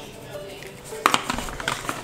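Garlic powder shaken from a plastic spice shaker over a glass bowl of lobster meat: a few quick rattling shakes in the second half, over faint background music.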